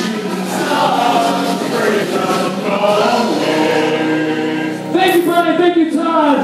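Several voices singing together over backing music, with a louder, brighter burst about five seconds in.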